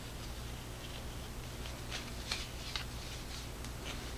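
Faint rustling of a headlamp's fabric headband strap being slid through its plastic slide buckle to lengthen it, with a few small scattered clicks.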